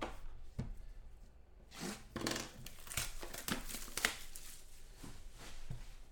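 Plastic shrink-wrap being torn and crinkled off a sealed trading-card box, in irregular rustling bursts with a few sharp clicks.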